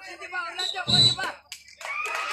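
A man's voice talking in short phrases, with a louder burst about a second in. After it comes a brief lull with a couple of clicks.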